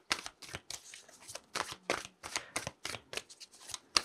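A deck of Wild Unknown Animal Spirit cards being shuffled by hand: a quick, irregular run of short, soft slaps and flicks of card against card.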